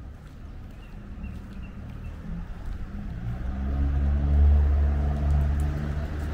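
A motor vehicle's engine running close by, a deep steady hum that swells about halfway through and then holds.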